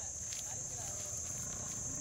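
Faint voices over a steady high-pitched insect drone, with a low rumble underneath.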